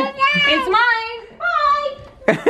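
A young child singing in a high voice: long, wavering notes in two short phrases, with a brief break just past the middle.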